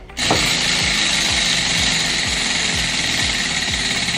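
Spinning prize wheel, its pointer flapper clattering rapidly against the pegs in a steady rattle that starts just after the spin. Background music with a regular beat runs underneath.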